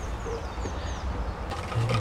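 Two faint, short, falling bird chirps in the first second over a steady low rumble.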